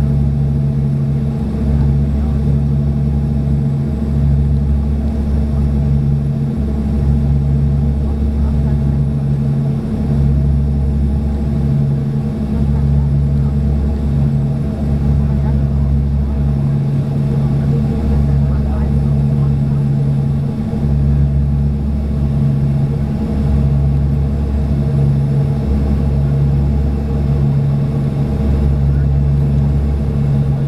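Cabin drone of a Dash 8 turboprop airliner on final approach, heard from a window seat beside the engine: a steady engine and propeller hum with a low throb that swells and fades evenly about every one and a half seconds.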